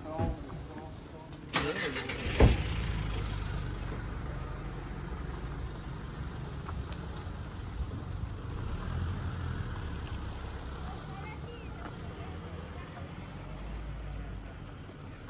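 A car engine starts about two seconds in, with a sharp thump, then runs with a low steady rumble.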